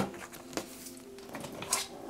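A deck of tarot cards set down on a hard tabletop with one sharp knock, followed by a softer tap and a brief rustle of cards being handled.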